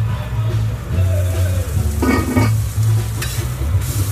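Food frying and sizzling on a food-truck cooking line, with music playing at the same time.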